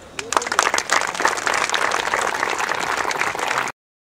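Audience clapping, starting just after the band's final chord has faded and quickly becoming dense, steady applause. It is cut off abruptly near the end.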